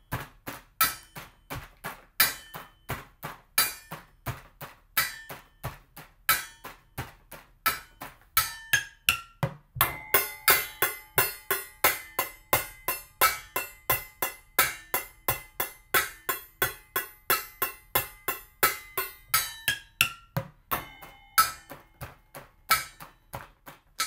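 Improvised drum kit of kitchen pots, pans, a bucket and metal lids struck with drumsticks, playing a steady basic rock beat. About nine seconds in comes a quick fill of falling pitches across the pots, then a crash, and a ringing metal jar lid used as the ride cymbal rings on under the beat.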